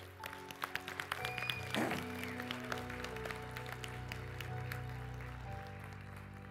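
Congregation clapping in scattered applause of praise over soft, sustained keyboard chords, the chord changing about a second in and again near the end.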